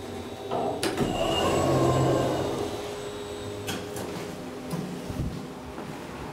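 Schindler Eurolift elevator car doors sliding open on arrival: a sharp click, then a swell of sliding noise that is loudest about two seconds in, with a faint steady hum and another click later.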